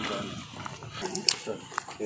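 A group of people talking outdoors, voices overlapping, with a few brief sharp clicks.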